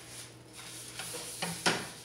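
A few light knocks and rubbing as a flat griddle pan is handled and wiped on a gas stove's grate, the sharpest knock near the end, over a low steady hum.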